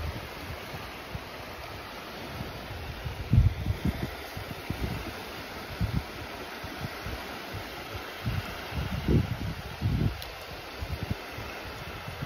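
Shallow seawater washing gently at the shoreline as a steady hiss, with short low rumbling gusts of wind on the microphone several times.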